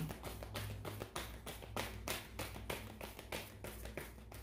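A deck of tarot cards being shuffled by hand, the cards slapping together in quick, fairly even clicks, about five a second.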